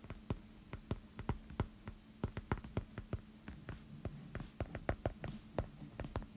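Stylus tip tapping and clicking on a tablet's glass screen while handwriting, in irregular sharp ticks several times a second, over a faint steady hum.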